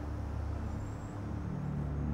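Low, steady urban rumble like distant road traffic, slowly growing louder.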